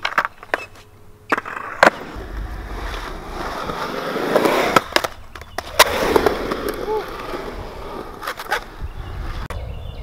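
Skateboard wheels rolling on a concrete bowl, the roll swelling and fading as the board rides up the wall and back for a rock to fakey. Several sharp clacks of the board striking the concrete, the loudest about two seconds in and near six seconds.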